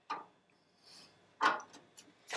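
Near silence: quiet room tone in a pause between spoken words.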